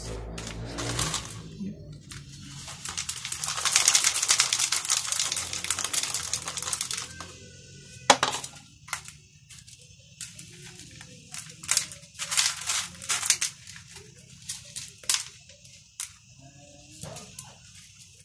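Hydroponic clay pebbles being handled: a dense crunching rattle for a few seconds, then a string of separate sharp clicks as single pebbles knock against one another and the plastic grow tower.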